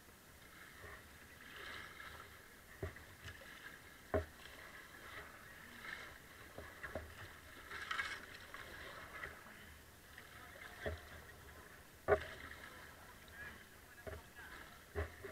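Kayak paddle strokes dipping and splashing in river water, quiet, with a few sharp knocks scattered through.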